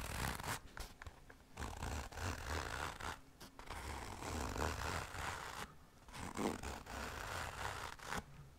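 Fingers scratching and rubbing a black padded fabric case held close to the microphone. The strokes come in quick, irregular runs broken by brief pauses.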